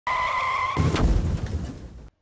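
Intro sound effect of a car tyre screeching: a steady high squeal that gives way, about three-quarters of a second in, to a low rumble with a sharp crack near the one-second mark, then fades away.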